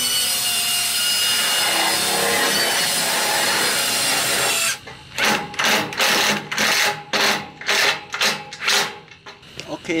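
Cordless 14.4 V drill driving a screw into a steel support frame: it runs continuously for about four and a half seconds, then goes in a quick series of short bursts until near the end.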